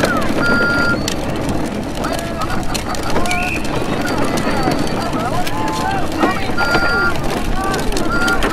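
Electronic sound effects from a toy ride-on car's steering wheel: short steady beeps twice, with other chirping, gliding tones in between. Under them is the rolling noise of its hard plastic wheels on a concrete path.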